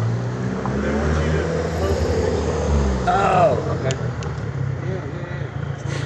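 Street traffic: a motor vehicle's engine rumbling close by, growing louder over the first three seconds, then dropping away.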